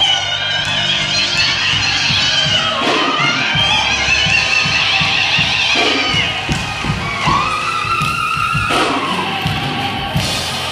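Live gospel music: a solo voice sings over the church band, holding one long note near the end, over a steady beat with crowd noise from the congregation.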